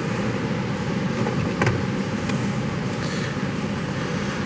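Steady low hum of a fan running in the car's cabin with the ignition switched on, with a few faint clicks in the middle.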